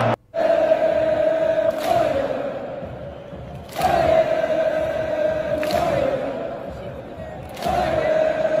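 Large football crowd in a stadium chanting in unison, holding a long sung note that starts afresh about every two seconds, with a sharp hit at each new phrase. The sound drops out briefly right at the start.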